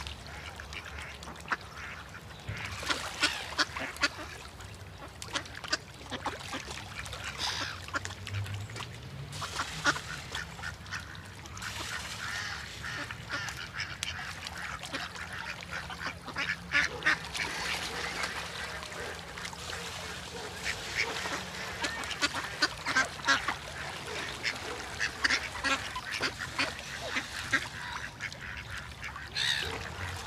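Ducks quacking repeatedly in irregular bursts.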